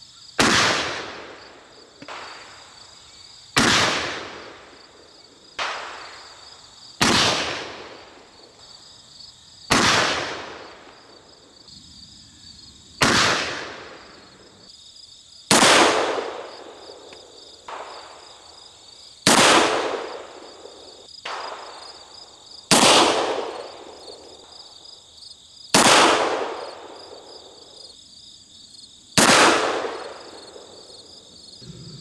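Ten shots from a .31 caliber Pietta replica 1863 Remington pocket cap-and-ball revolver firing black powder, about three seconds apart, each a sharp report with a ringing tail. Crickets chirp steadily underneath.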